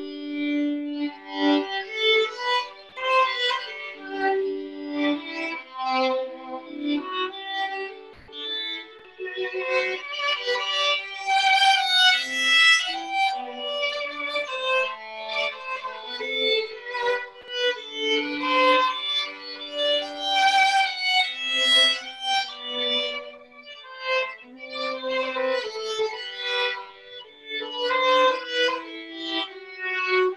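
Two violins playing a waltz together as a duet, with a busier, brighter high passage about a third of the way in.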